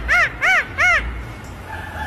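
A rapid run of short, squeaky pitched calls, each rising and falling, about three a second, climbing in pitch over the series and stopping about a second in.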